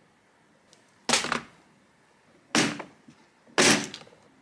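Clear plastic bead organizer boxes being handled: three sharp plastic clacks, a second or so apart, the last as a red snap latch on a box is worked open.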